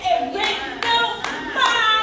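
A woman's voice singing or chanting through a microphone over rhythmic hand clapping, about two to three claps a second.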